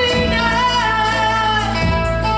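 Live acoustic band: a woman sings one long held note with a slight waver, over acoustic guitar and electric bass. The note fades out shortly before the end.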